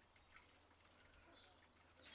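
Near silence with faint, high-pitched bird chirps: a thin held note about a second in and a short falling chirp near the end.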